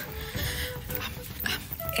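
Background music: a quiet held note.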